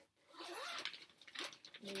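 The zipper of a garment bag being pulled along in two quick runs, each under a second.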